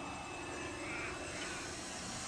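Engine of a quarter-scale DH82 Tiger Moth radio-controlled model biplane running steadily in flight.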